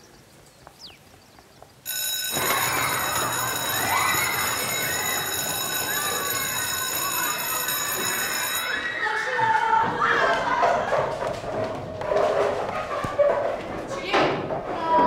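Electric school bell ringing continuously for about seven seconds, cutting in suddenly about two seconds in, over the chatter and footsteps of many children in a corridor. The bell stops suddenly about nine seconds in, and the children's voices carry on.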